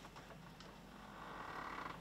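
Faint handling noise as a hardback book is picked up and moved, with a faint drawn-out creak in the second half.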